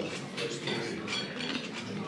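Dining-room background: faint clinks of cutlery and dishes over a low murmur of distant voices.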